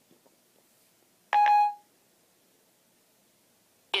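iPhone 4S Siri tone: a single short electronic beep, about half a second long, about a second and a half in, signalling that Siri has stopped listening and is processing the spoken question.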